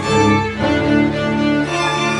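Cello bowed, playing a slow line of sustained notes over a backing track, with the tune taken at half speed.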